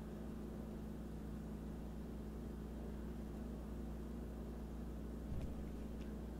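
Steady low hum with faint hiss, with a single faint tick near the end.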